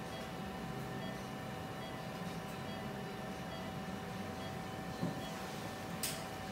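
Steady room hum in a procedure room, with faint steady high tones; a brief knock about five seconds in.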